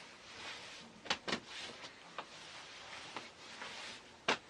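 Hands patting and rubbing down a denim jacket and jeans: a soft rustle of fabric, with a few light taps, two close together about a second in and single ones near two and three seconds.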